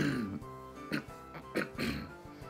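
A man clearing his throat, with a few short throat noises about a second in and near the end, over steady background music.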